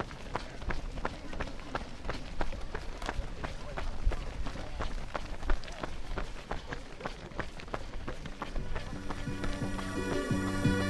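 Running footsteps on an asphalt road, quick regular strikes about three a second, from a pack of runners. Music with a steady beat comes in about nine seconds in.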